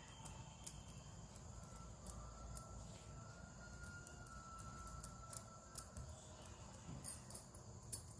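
Faint clicks of knitting needles working stitches, with a faint, high, steady tone in the background for a few seconds in the middle.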